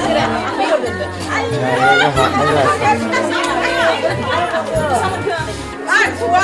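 Several people chattering over background music with a steady, pulsing bass.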